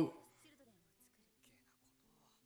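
A man's laughing speech cuts off right at the start. Then near silence, with the anime's soundtrack playing very faintly: quiet steady music tones and faint voices.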